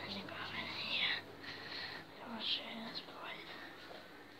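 A person whispering, breathy syllables with little voice in them.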